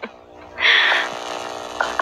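A steady, buzzy electric drone lasting about a second and a half, starting about half a second in and fading just before the end.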